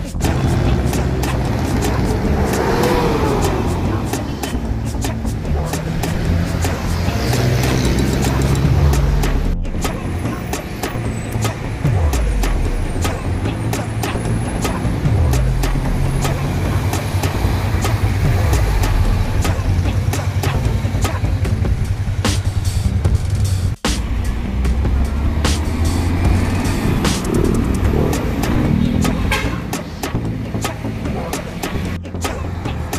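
Large intercity coaches and cars driving past on a city road, engines and tyres rumbling as they go by, mixed with background music that has a moving bass line.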